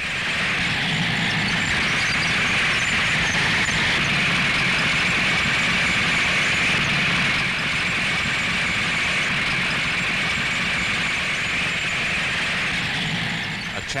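Scorpion mine-clearing flail tank running: a loud, steady mechanical noise with no separate strikes, easing slightly about halfway through.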